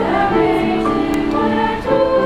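High school choir singing, holding sustained chords in several voice parts; the chord changes twice.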